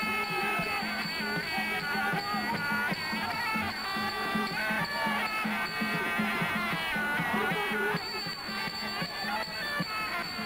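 Thai boxing ring music (sarama): a reed pipe plays a gliding, wavering melody over a steady, even drum beat.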